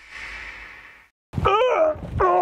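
Music cuts off at the start and a faint hiss fades away. About a second and a half in, a man lets out a long groan of effort that slides up and down in pitch as he hauls himself over the side of a boat.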